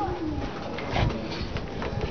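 Cloth towel rubbing over an airplane's painted wing tip with cleaner, giving short squeaks. One squeak near the start falls in pitch, over the rustle of the wiping.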